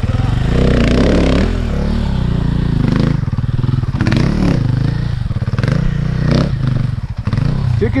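Dirt bike engine running close by, its revs rising and falling in short throttle blips, with a few sharp clattering knocks.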